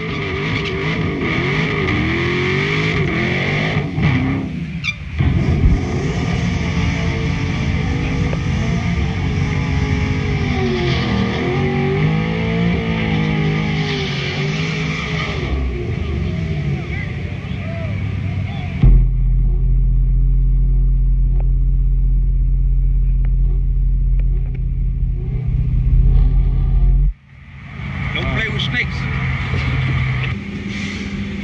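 Drag-strip muscle cars' V8 engines idling and revving, with voices in the background. About 19 seconds in the sound turns into a steadier, deeper drone with the highs dulled, which cuts off abruptly near 27 seconds before engine sound returns.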